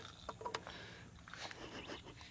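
Mostly quiet, with faint low voices and a few small clicks about half a second in.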